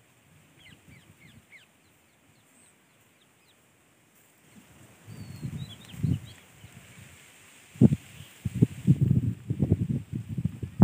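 Small birds chirping faintly in short, falling notes, then close rustling and bumps that get much louder after about eight seconds.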